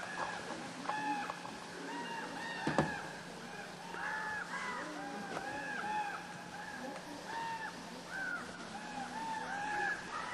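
A flock of birds calling over and over, many short rising-and-falling calls overlapping one another. A single sharp knock sounds about three seconds in, and a faint steady hum runs underneath.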